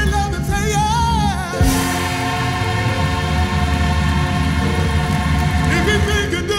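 Black gospel choir recording played from a vinyl LP: a singer's wavering line over a full band. About a second and a half in it gives way to a long held chord, and singing picks up again near the end.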